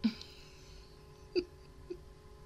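A woman's stifled laughter: three short, hiccup-like bursts caught in the throat, the first at the very start, another just past halfway and a smaller one near the end.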